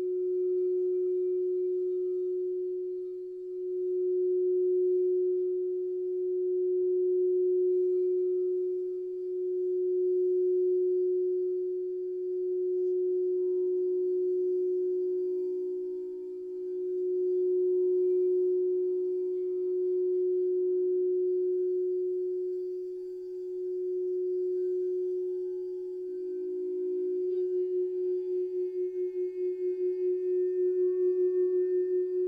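Frosted quartz crystal singing bowls sung by mallets circled around their rims: one steady low tone that swells and fades every few seconds, with fainter higher bowl tones above it. Near the end another bowl joins and the sound takes on a fast wobble.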